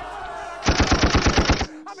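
A rapid burst of about a dozen sharp hits packed into one second, starting a little before the middle and cutting off suddenly, like a machine-gun rattle.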